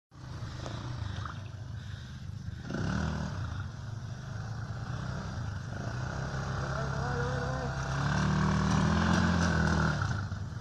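Irbis ATV200 quad bike's 200 cc engine revving under load as the quad churns and lurches through deep mud, its revs rising about three seconds in and again near the end.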